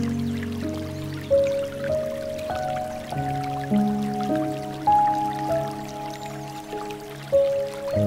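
Slow, gentle piano music of held notes, with water trickling and dripping softly underneath.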